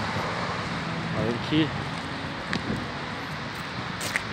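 Steady hum of city street traffic, with a couple of spoken words and one short click in the middle.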